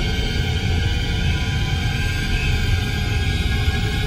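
Background music made of sustained, held tones over a deep low rumble, with no clear beat.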